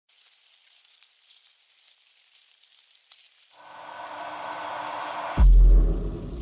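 Logo intro sound effect: faint scattered crackling ticks, then a swell rising from about three and a half seconds in, ending in a loud deep boom near the end.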